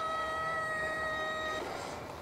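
A single long, high tone from the anime clip's soundtrack. It slides up at the start, holds one steady pitch for about a second and a half, then stops.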